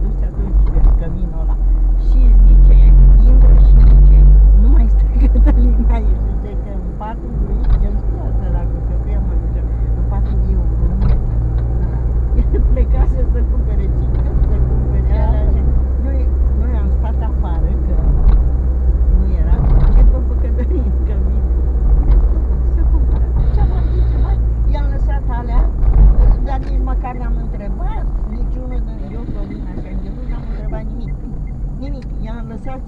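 Engine and road rumble of a car heard from inside the cabin while driving, the engine note shifting up and down and loudest a few seconds in, with people talking over it.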